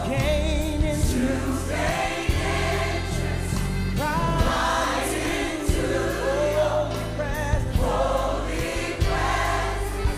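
A choir singing gospel-style worship music over instrumental backing, with held bass notes and a regular beat.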